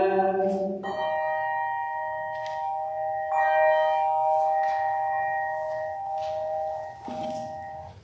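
The last of a sung chant fades, then a pipe organ holds two steady sustained chords, the second entering about three seconds in; the chords stop near the end.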